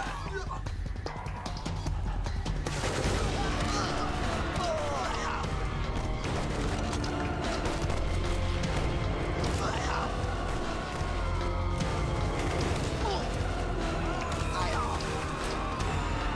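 Dramatic film score with sustained low notes laid over a gun battle: scattered rifle and pistol shots and men shouting.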